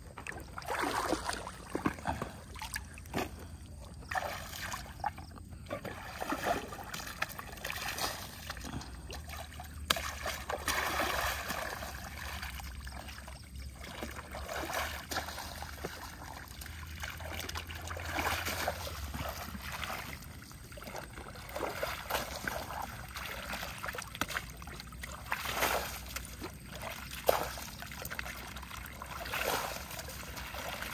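Water splashing and trickling as a gold pan is dipped into shallow pond water and poured over dug earth on a carpet sluice mat, washing the soil for gold. The pours and splashes come irregularly, one every second or two.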